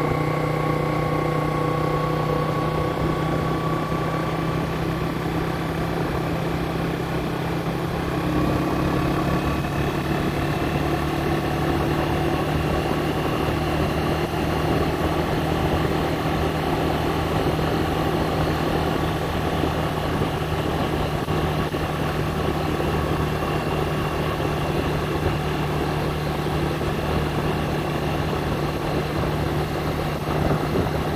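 A vehicle's engine running steadily at a low, even speed, its note drifting slightly in pitch, over a constant background rush.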